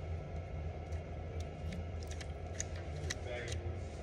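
Pass-through RJ45 crimp tool being squeezed down on a Cat6 plug: a run of short, sharp clicks from about a second and a half in as the tool closes, crimping the plug and shearing off the wire ends that stick out through its front. A steady low hum runs underneath.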